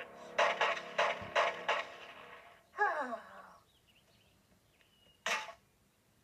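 Cassette recorder playing choppy, garbled sound that slides down steeply in pitch and dies away, like a tape running down. A single sharp thunk comes near the end, the recorder being dropped into a park trash can.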